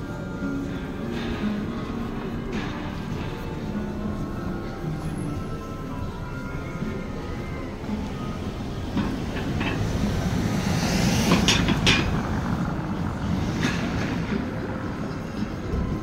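Busy city street ambience with traffic noise and faint music in the background. A vehicle passes close, growing louder to a peak about eleven seconds in, with a few sharp clicks around it.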